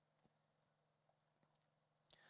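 Near silence: room tone, with two very faint clicks.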